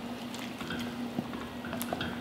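A stout braise bubbling at a boil in a Dutch oven while a wooden spatula stirs it, with a couple of light knocks of the spatula. A faint steady hum runs underneath.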